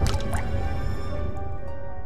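Eerie horror-film music of long held notes over a low rumble, with a single drip-like sound effect, a sharp plink rising in pitch, right at the start.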